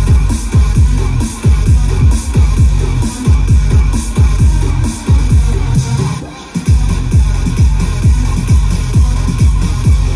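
Electronic dance music played loud through a PA set of four subwoofer cabinets and four stacked line-array speakers, driven by a heavy kick drum at about two beats a second. The bass drops out briefly about six seconds in, then the beat comes back.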